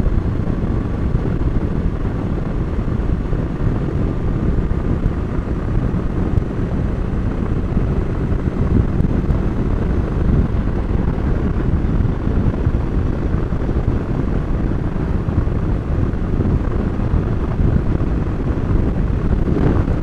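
Steady rush of wind on the microphone over a motorcycle running at road speed.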